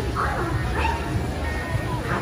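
Crowd chatter over background music, with a few short, sharp, bark-like calls.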